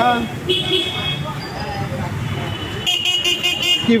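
Vehicle horns sounding on a busy street: a short high-pitched toot about half a second in and a longer one near the end, over steady traffic noise.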